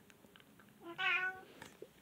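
A domestic cat meowing once, a short call about a second in.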